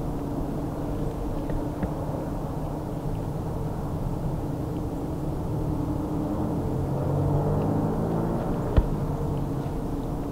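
Steady low drone of a distant engine, swelling a little and sliding in pitch near the end as it passes, with one sharp click about nine seconds in.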